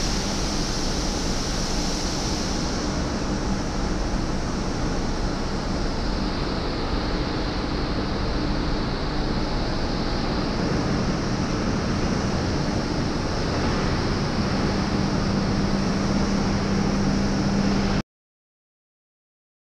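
Steady factory-floor machinery noise: a constant rushing hiss over a low machine hum, the hum growing stronger over the last few seconds.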